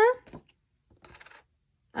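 Faint, brief rustling and light clicking of small plastic items being handled: clear plastic packaging and small plastic discs, about a second in, otherwise almost quiet.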